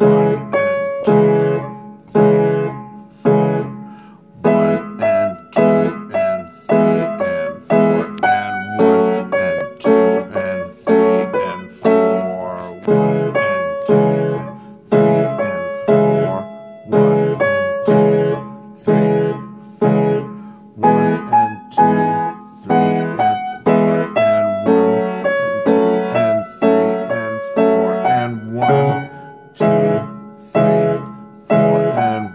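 Upright piano played with both hands: a steady run of struck chords under a melody, each chord ringing and fading before the next.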